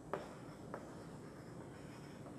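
Two light clicks about half a second apart, just after the start, over faint room hiss in a small classroom.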